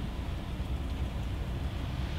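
Steady low rumble and faint hiss of room background noise, with no distinct sound events.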